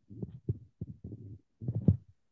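Muffled, choppy voice coming through a video call in short broken bursts with the treble missing: a participant's connection breaking up on an unstable internet link.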